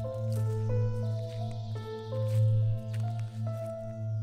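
Music from a progressive metal album: a slow run of ringing pitched notes, a few a second, over a steady low held note.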